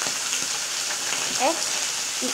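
Steady high hiss of background noise, with one short vocal sound from a child about one and a half seconds in.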